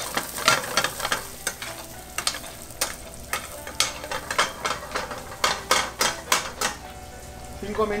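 Mushrooms and chopped bacon sizzling in a stainless steel frying pan while a spoon stirs them, clicking and scraping irregularly against the pan, with a quick run of knocks about two-thirds of the way through.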